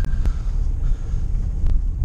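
Cabin noise of an MG HS SUV being driven: a steady low rumble of engine and road, with a few faint clicks.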